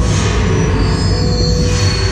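Mad House ride soundscape: eerie soundtrack music over a steady deep rumble, with a high screeching sound that swells near the start and again near the end.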